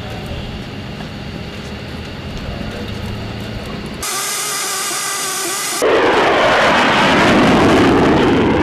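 Jet aircraft noise in edited cuts: a steady rumble first, then about four seconds in a steady high-pitched turbine whine, and from about six seconds a loud jet roar with a slowly sweeping sound, as of a jet passing overhead.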